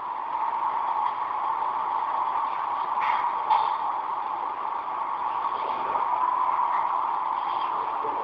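Steady industrial machinery noise in a meat-processing hall, with a thin, muffled tone, and a couple of faint knocks about three seconds in.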